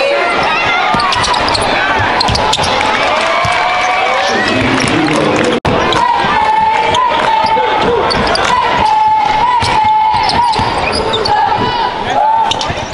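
A basketball being dribbled on a gym court during a game, the bounces mixed with crowd voices echoing in a large hall. In the second half a wavering high note is held for several seconds above the noise.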